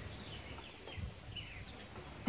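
Faint outdoor ambience: a few short, high bird chirps over a low, steady rumble.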